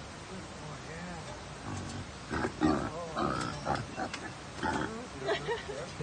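A caged animal giving a run of short, loud cries with wavering pitch, starting about a second and a half in and ending shortly before the end.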